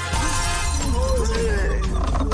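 A loud shattering crash just after the start, as in a film fight when something is smashed over a man, followed by a man's voice crying out, over a steady, bass-heavy music score.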